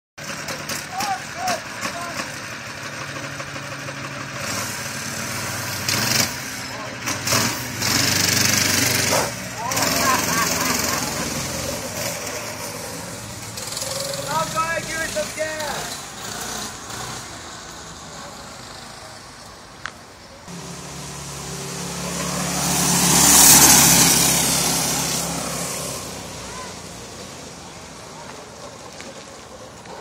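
Small engine of a motorized beer cooler running, revved in several bursts in the first third. Later the cooler's engine is heard driving past, growing louder to a peak about two-thirds of the way through and then fading into the distance.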